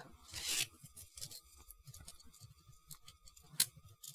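Small plastic model kit parts handled on a table: a short scraping rustle about half a second in, faint scattered clicks, and one sharp plastic click near the end.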